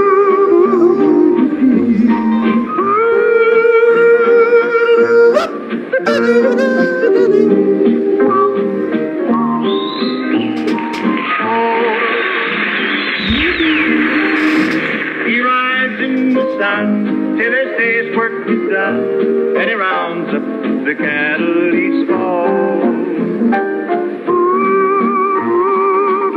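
Old-time country song playing: a male singer yodeling in long, wavering held notes with leaps in pitch, over an acoustic guitar and band accompaniment.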